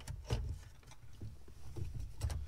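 A few light clicks and knocks from parts being handled while the emergency brake cable and its rubber seal are fitted, over a low rumble of handling.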